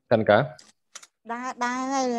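Two quick computer keyboard clicks, under a second apart, in a short gap between speech.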